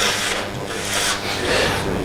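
Rubbing, rustling noise in three swishes, near the start, about a second in and near the end.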